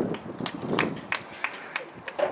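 Soccer match field sounds: voices calling out from the pitch, with a string of short, sharp, irregular knocks.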